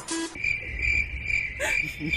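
Crickets chirping in a steady high trill that starts abruptly just as the background music cuts out: the comic 'crickets' sound effect for an awkward pause with no answer.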